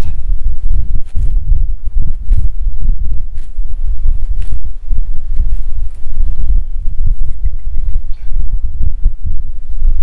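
Wind buffeting the microphone, a heavy, gusty low rumble, with a few faint clicks and rustles of grass and plants being handled.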